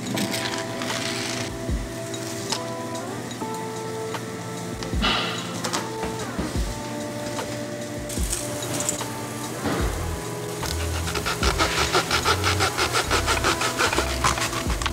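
Background music, with a few scattered knocks, then from about ten and a half seconds a small hacksaw cutting through a toy-blocker strip in quick, even strokes.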